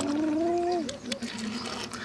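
A child's voice holding one steady pitched sound for just under a second, dropping away at the end, with a few light clicks of die-cast toy cars being set down on a table.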